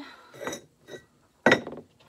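A single sharp clink about one and a half seconds in, with a fainter tap before it: pieces of firebrick knocked and set down on the metal table of a wet tile saw that is not running.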